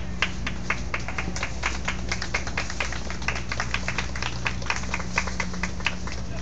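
Scattered clapping from a small crowd: sharp, separate claps, several a second and unevenly spaced, over a steady low hum.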